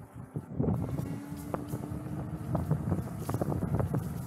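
Wind buffeting the microphone on a moving e-bike, over a low rumble with scattered rattles and knocks as the tyres run over a rough dirt trail. A steady hum sounds in the first half, then fades.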